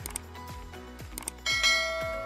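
Subscribe-button animation sound effect: short clicks, then a bright bell chime about one and a half seconds in that rings on. A music track with a steady beat plays underneath.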